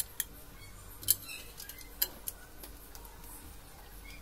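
Small metal wall-mount brackets and their hardware clicking and clinking as they are handled and set against the wall: about five sharp, separate clicks, the loudest about a second in.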